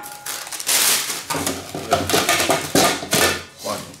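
Paper packing rustling and crinkling as it is pulled from inside nested aluminium cooking pots, with light metal clinks and scrapes as one pot is lifted out of the other.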